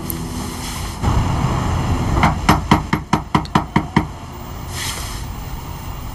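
Rapid, loud knocking on a door: about nine blows in under two seconds, over a low rumble.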